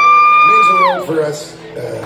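A loud, high-pitched 'woo' from an audience member close to the recorder, held steady and dropping off about a second in, followed by quieter crowd and stage sound.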